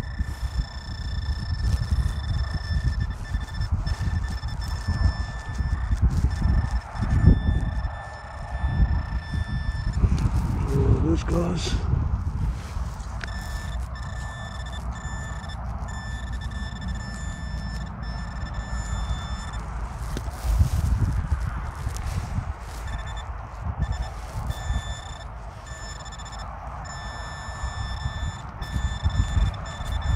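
Handheld metal-detecting pinpointer giving a steady high-pitched alert tone as its tip is probed and scraped through ploughed soil, signalling a metal target close by. The tone drops out for a few seconds about a third of the way in and breaks up into shorter stretches near the end, over a low rumble.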